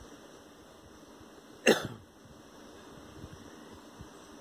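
A single short cough a little before halfway through, set against quiet room tone.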